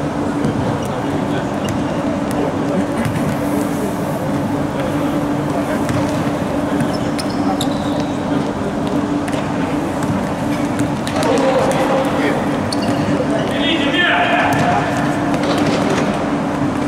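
Indoor futsal game in a sports hall: the ball being kicked and bouncing on the hard court with sharp knocks, indistinct shouting from players and onlookers, louder twice in the second half, over a steady low hum.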